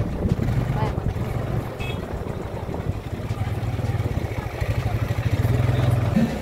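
Quad bike (ATV) engine running while riding over sand, a steady low hum that eases off about two seconds in and builds up again toward the end.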